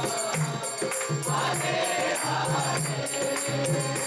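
Kirtan: a congregation singing a devotional chant together, led over a harmonium, with a steady percussion beat.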